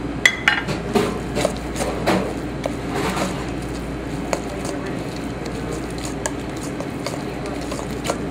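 Metal spoon stirring and scraping a thick ricotta cheese filling in a stainless steel mixing bowl, with quick clinks and taps against the bowl, most frequent in the first three seconds or so. A steady low hum runs underneath.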